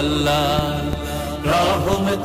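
Devotional chanting: a voice holding long, wavering notes over a steady low drone, with a new phrase beginning near the end.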